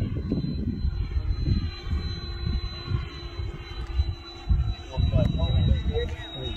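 Freewing Avanti S 80mm electric ducted-fan RC jet flying overhead, its fan heard as a faint whine, with wind buffeting the microphone.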